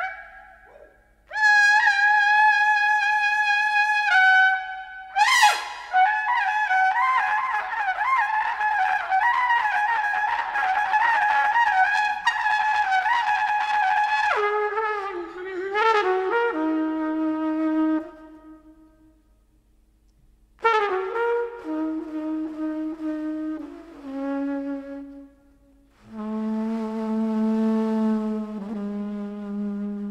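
Trumpet playing an improvised jazz line: a held high note, then a fast run of notes, then falling lower phrases. After a pause, short phrases lead to a long low note near the end.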